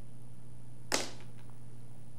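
Steady low electrical hum on the studio audio, broken about a second in by one short, sharp whoosh-like noise.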